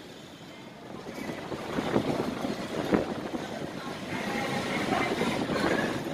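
Street traffic noise, a steady rush of passing vehicles that grows louder about a second in, with a few brief clatters.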